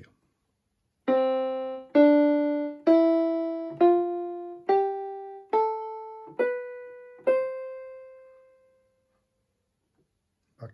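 MK-2000 electronic keyboard on a piano voice playing a C major scale upward, one note at a time from middle C to the C above: eight slow, even notes about one a second, starting about a second in. The top C is held and dies away.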